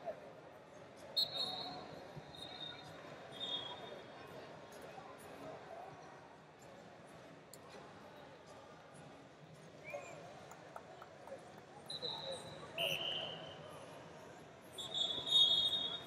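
Wrestling shoes squeaking on the mat in short, high-pitched chirps as two wrestlers hand-fight on their feet, the loudest squeak near the end. Under them runs the steady chatter of a large arena crowd.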